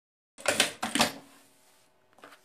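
A quick cluster of sharp clicks and knocks, the loudest about half a second and a second in, starting abruptly out of dead silence and fading within about a second: objects being handled on a sewing worktable.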